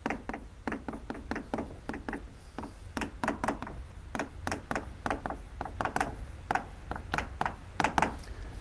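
Chalk writing on a blackboard: a quick, irregular run of small taps and clicks as the chalk strikes and drags across the board.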